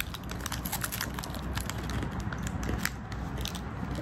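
A person chewing a crunchy peanut candy bar topped with sesame seeds close to the microphone: many small, irregular crunches and crackles.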